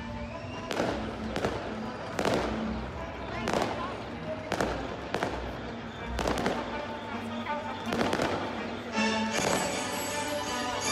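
Fireworks display: aerial shells bursting with sharp bangs, roughly one a second, with music playing underneath.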